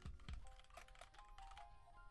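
Faint computer keyboard typing, a quick run of key clicks, over quiet background music with held notes.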